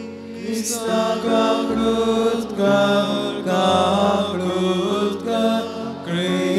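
A hymn sung slowly in long held notes over a sustained accompaniment whose bass notes change in steps.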